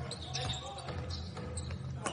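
Basketball game court sound in a near-empty arena: a few thumps of the ball and feet on the hardwood over a low, steady hum.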